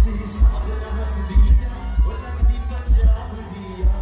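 A Punjabi pop song performed live by a singer and band over a concert PA, with a heavy bass beat pulsing about twice a second under a sung melody.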